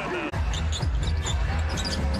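Basketball being dribbled on a hardwood arena court, with arena music playing underneath. There is a brief drop in sound just after the start.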